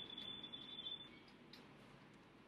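Near silence: faint room tone, with a faint high, steady whine during the first second.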